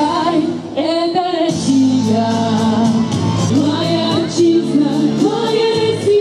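A patriotic Russian song about the homeland, with sung vocals held on long notes over instrumental backing with a steady beat.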